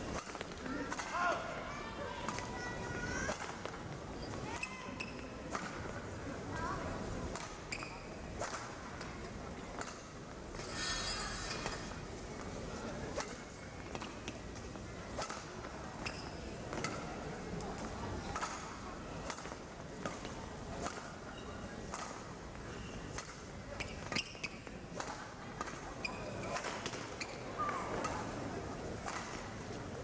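Badminton rally: rackets striking the shuttlecock with sharp pops, exchanged at irregular intervals, over the steady murmur of an indoor arena crowd.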